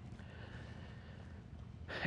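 Quiet outdoor background with a faint, steady high hum from about a quarter of a second in until about one and a half seconds in.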